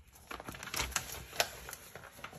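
A handful of light clicks and taps from craft supplies being handled on a table, the sharpest about one and a half seconds in.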